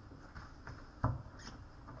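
Small knocks and rustling from people moving and handling things at an altar, with one louder thump about a second in.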